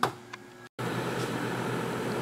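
A sharp click, then after a brief break a steady mechanical hum of running machinery.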